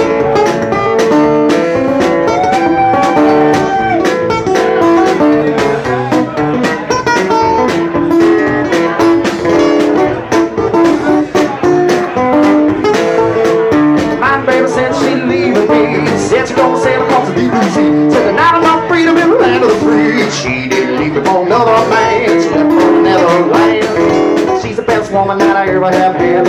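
Guitar playing a blues rag instrumental opening with a steady beat of knocks under the picked notes.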